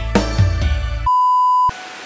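Band music with sharp drum hits, cut off about a second in by a steady high beep lasting about half a second, an edited-in bleep tone over a silenced soundtrack.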